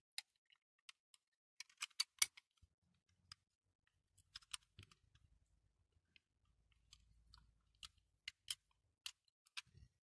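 Small clicks and taps of a die-cast toy car's body, baseplate and plastic parts being handled and pressed together by hand, in scattered clusters, the loudest about two seconds in.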